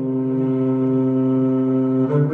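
ZETA electric violin bowing one long, steady low note, held without a break as the slow opening of a doina.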